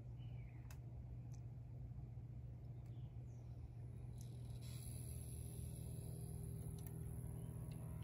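Low, steady electrical hum from an amplifier test bench while a car amplifier runs a one-ohm burst test into a dummy load. A faint high-pitched whine joins about halfway through.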